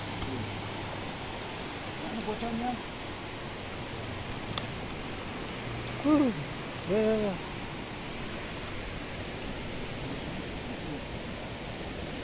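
Steady rush of a flooded river's water. A few short vocal sounds break in about two, six and seven seconds in.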